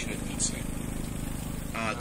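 Tour boat's engine running with a steady low hum under faint passenger voices; a short click about half a second in.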